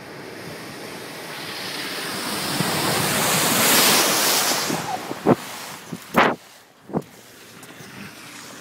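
Land Rover 4x4 ploughing through a flooded, muddy track, its rushing splash of water swelling to a peak about four seconds in as muddy spray is thrown up. Three or four sharp knocks follow near the end.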